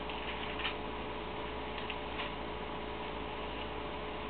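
Steady room hiss and hum, with a few faint, irregularly spaced clicks and rustles from the thin pages of a Bible being handled and leafed through.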